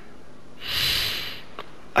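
A man draws one loud, deep breath. It starts about half a second in and lasts under a second: he is composing himself, as he gets quite emotional.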